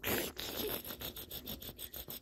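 A plush toy rubbed back and forth against a baby's clothing in a tickle, a quick run of scratchy fabric-on-fabric strokes.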